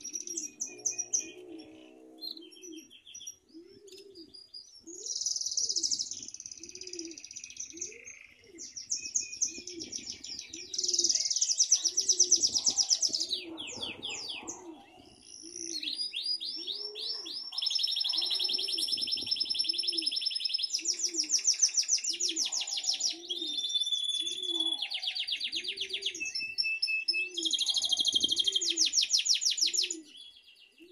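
Domestic canary (Belgian canary) singing long, rapid rolling trills in changing phrases, growing fuller and louder through the second half. A low call repeats steadily underneath, a little faster than once a second.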